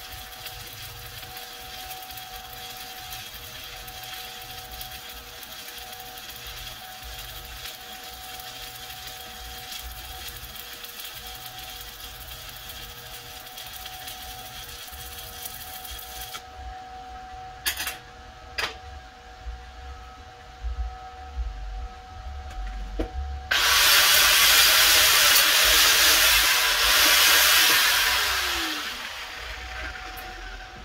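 Stick-welding arc from a Titanium Unlimited 200 inverter welder burning 7018 rod, crackling and hissing steadily until it breaks off about half-way through. A few sharp knocks follow, then a loud rushing burst of tool noise lasting about five seconds that fades out near the end.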